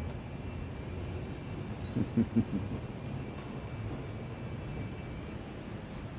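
Steady low background rumble with a low hum, with a few brief pitched sounds about two seconds in.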